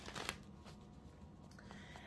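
A deck of oracle cards being shuffled by hand: a short burst of card rustling at the start, then only faint rustling.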